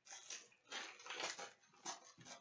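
Foil trading-card pack wrapper crinkling and tearing as it is opened by hand, in several short rustling bursts with a sharper crackle near the end.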